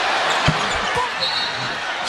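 Steady crowd noise in a packed basketball arena, with two dull thuds of a basketball bounced on the hardwood court about half a second and a second in, as the free-throw shooter dribbles at the line.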